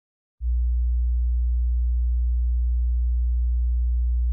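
A steady, deep electronic hum: one low, unwavering tone that starts abruptly about half a second in.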